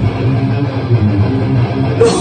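Heavy metal band playing live: electric guitar and bass carry a riff with the drums dropped out, and a drum and cymbal hit comes back in at the very end.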